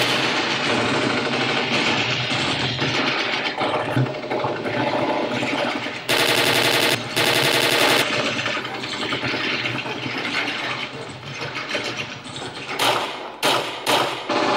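Machine-gun fire sound effect: a long, dense run of rapid automatic shots. It is loudest in two bursts about halfway through and ends with a couple of short bursts.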